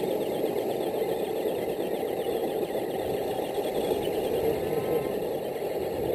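Several radio-controlled scale trucks racing across gravel: a steady rough crunching of tyres on gravel, mixed with a faint wavering whine from their electric motors and gears.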